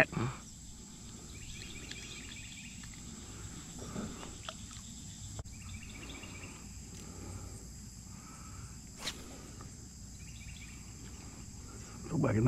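Steady high-pitched chorus of summer insects, with a few faint repeated chirps and a couple of sharp clicks, one about four seconds in and one about nine seconds in.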